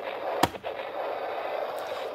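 Crackling rustle of a plush Hulk fist glove pressed and rubbing against the microphone, with a single knock about half a second in.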